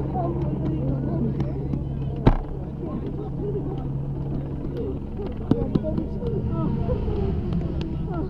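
Chatter of several people crowded close around the motorcycle, over a steady low hum that weakens about two seconds in. A sharp knock comes at that point, and a couple of smaller knocks follow later.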